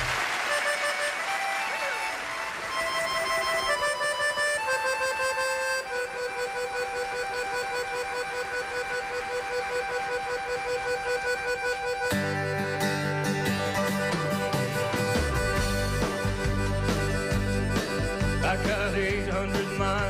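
Accordion playing a solo melody line of held, stepping notes as the intro to a country song. About twelve seconds in the full band comes in under it with bass, drums and strummed acoustic guitar, keeping a steady beat.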